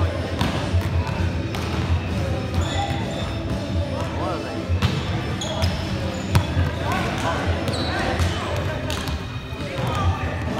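Indoor volleyball rally in a gymnasium: several sharp slaps of hands on the ball, short high squeaks of sneakers on the hardwood court, and players calling out, all echoing in the hall.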